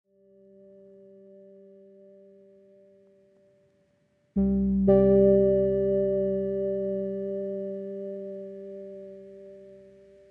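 Background keyboard music: a soft held chord fades in and dies away, then a louder chord is struck about four seconds in and another half a second later, both left ringing and slowly fading.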